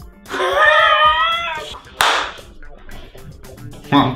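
A drawn-out, high-pitched vocal sound with wavering pitch, then about two seconds in a single sharp hand slap, swatting at a fly.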